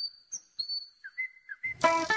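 Thin, whistle-like electronic tones: a few short pure pitches that slide up and then hold, with small chirps between them. Music with plucked notes starts near the end.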